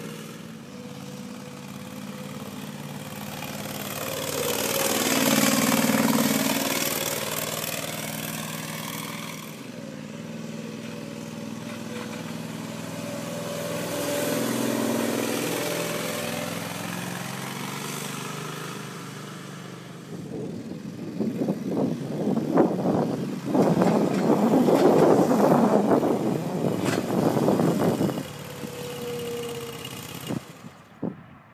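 Engine of a Lee Spider self-propelled sprayer running steadily, its note swelling and fading twice as the machine drives past. In the last third a loud, irregular buffeting noise covers the engine.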